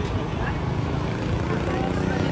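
Busy outdoor dining street ambience: indistinct chatter of people over a steady low rumble.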